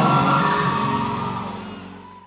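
Music from a live stage performance, with sustained notes, fading steadily away.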